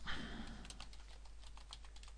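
Faint computer keyboard keystrokes: a scattering of soft, irregular key clicks.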